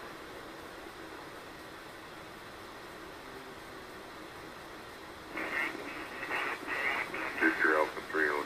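Steady hiss of a ham transceiver's receiver on the 40-metre band (7.189 MHz, lower sideband) between transmissions. About five seconds in, a fainter station's voice comes through, thin and narrow as single-sideband speech sounds.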